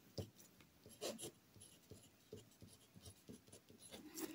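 Ballpoint pen writing on paper: faint, short scratching strokes as characters are written, a little louder about a fifth of a second and a second in.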